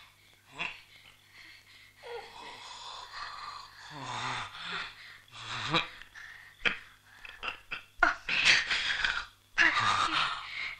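Strained, wheezing breaths and gasps from a person in distress, some with voice in them, coming irregularly and growing louder near the end.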